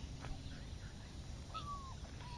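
A dog whining: one short, high whine near the end that drops in pitch, over a steady low rumble of wind on the microphone.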